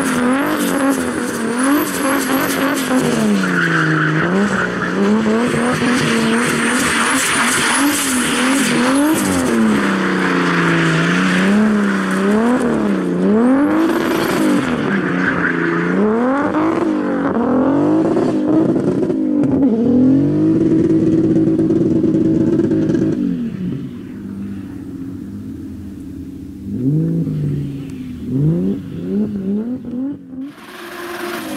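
Mercedes saloon rally car drifting, its engine revving up and down over and over with the tyres squealing and skidding. About two-thirds of the way through it holds a steady high rev for a few seconds. It then turns fainter and farther off, with a few short rev blips.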